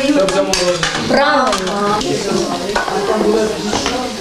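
A metal spoon scraping and clinking in a metal bowl while ice cream mix is stirred with liquid nitrogen, with voices talking over it.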